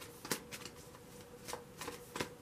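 A deck of tarot cards being shuffled by hand: irregular short slaps and flicks of cards against the deck, the loudest about a third of a second in.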